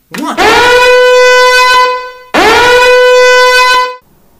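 Two loud, long horn-like alarm blasts, each about two seconds. Each slides up in pitch as it starts, then holds one steady note. It is the alarm of a trap set off by the code just entered.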